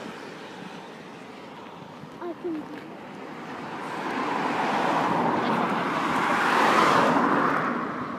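A car driving past on the road: its road noise builds from about three seconds in, peaks near the end, and fades.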